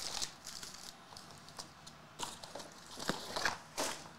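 Foil-wrapped trading-card packs crinkling and rustling as they are lifted out of a cardboard box and stacked, with a few sharper crinkles, the loudest near the end.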